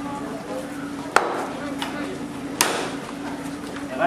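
A heavy cleaver chopping into a cow's head on a thick wooden chopping block, splitting the skull: three blows between one and three seconds in, the first and last the hardest.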